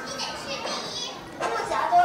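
Children's voices talking, fainter at first and louder near the end.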